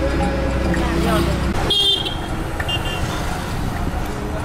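Vehicle horn honking just under two seconds in, with a shorter toot about a second later, over the engine and road rumble of a moving vehicle on a busy road.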